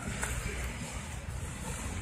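Steady outdoor background noise with a low wind rumble on the microphone.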